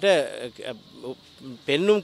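A man speaking, with a pause of about a second in the middle; faint insect chirping can be heard in the background during the pause.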